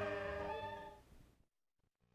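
The last held, wavering note of a radio station-ID jingle fading out over about a second, followed by silence.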